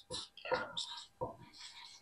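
A marker writing on a whiteboard: a run of short, faint scratchy strokes as letters are written.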